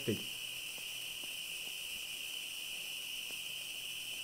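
Fireworks from hundreds of firework batteries firing at once, heard as a steady high hiss with a few faint pops scattered through it.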